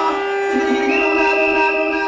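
Recorded music played loud through a club sound system by a DJ: long held notes, with a high sustained tone coming in about a second in.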